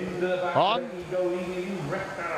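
A man's commentating voice, holding one long drawn-out syllable at a nearly steady pitch, with a quick upward swoop about half a second in.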